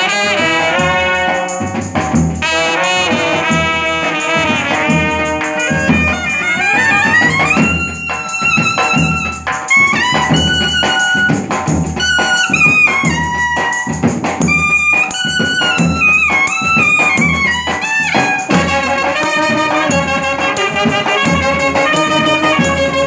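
Brass band playing live: clarinet, trumpet and euphonium-type horns with a sousaphone and a drum keeping time. The melody bends and slides between notes, with one long upward slide partway through.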